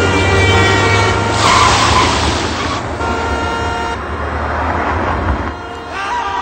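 City street traffic: engine rumble with car horns sounding, and a vehicle rushing past about one and a half seconds in.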